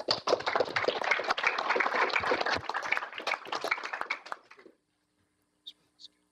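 Audience applauding: many hands clapping at once, which dies away about four and a half seconds in.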